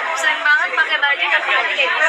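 Only speech: voices talking, with chatter throughout and no other distinct sound.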